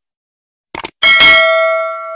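A quick double mouse-click sound effect, then about a second in a single bright bell ding that rings on and slowly fades. This is the notification-bell sound effect of a subscribe animation.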